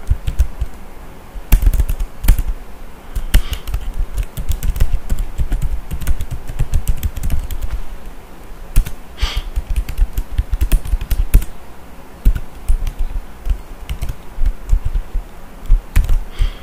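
Typing on a computer keyboard: irregular runs of quick keystrokes with short pauses between them.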